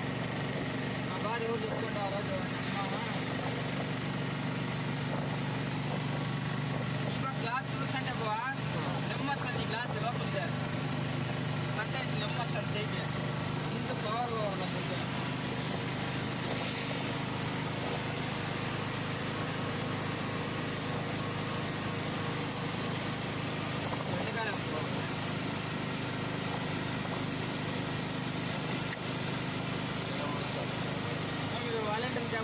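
Auto-rickshaw engine running steadily at speed, with wind and tyre noise from the wet road.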